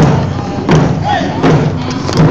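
Round-dance drums beating a steady beat, about one stroke every three-quarters of a second, with singing voices over the drumming.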